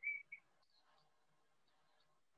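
Two short high squeaks right at the start, then near silence: room tone.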